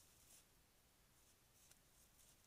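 Near silence with faint, scratchy rustling and a light click in dry grass from a bull moose grazing and stepping through it.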